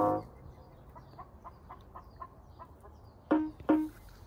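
A sustained musical note dies away at the start, followed by faint, quick ticking and then two short, loud chicken clucks about half a second apart near the end.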